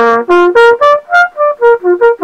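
Trumpet playing a quick run of about ten short, separately tongued notes that step up and then back down. Each note is changed by lip tension alone, without pressing the valves, moving through the instrument's open notes.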